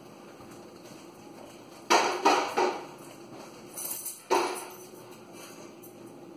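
Several short clattering knocks: three close together about two seconds in, then a faint rattle and a single sharper knock at about four and a half seconds.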